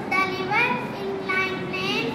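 A young girl's voice, close to the microphone, talking with some long, drawn-out syllables.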